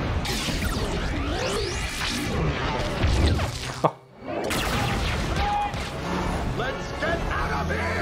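Animated film's action-scene soundtrack: musical score mixed with crashes and impacts from an attack. The sound drops away sharply for a moment about four seconds in, then comes back.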